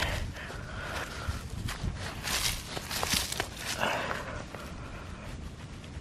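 Soil and dry leaves rustling and crunching as carrots are worked loose by hand from ground with a thin frozen crust, in a few short scraping bursts, over a low rumble of wind on the microphone.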